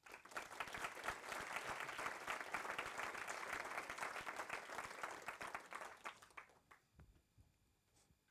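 Audience applause, a dense patter of many hands clapping, starting straight away and dying out about six and a half seconds in.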